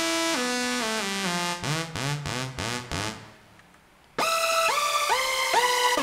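Roland Fantom 7 synthesizer playing a lead patch: a falling run of notes, then quick short notes, a pause of about a second, and a new phrase whose notes slide up into pitch.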